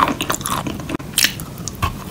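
Close-miked biting and chewing of a dry, powdery lump of the kind sold as edible clay or chalk: irregular crackly crunches with some squish, the sharpest a little past the middle.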